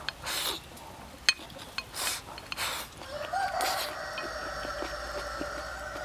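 A rooster crows once in the background, a single long drawn-out call starting about three seconds in. Before it there are a few short breathy sounds of someone eating.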